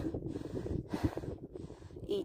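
Wind buffeting the phone's microphone in uneven gusts, a low rumble with passing hiss.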